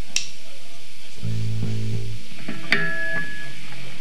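Sparse notes from a live band's amplified guitars between song phrases: a click, then one low note held for about a second, then a sharply picked higher note left ringing.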